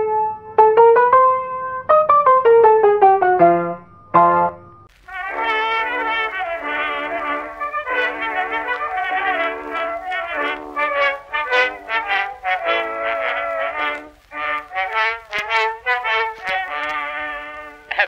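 A short keyboard jingle over the first few seconds, then, after a brief gap about five seconds in, the orchestral introduction of an Edison Blue Amberol cylinder record played back, with a steady low hum under it, leading into the vocal.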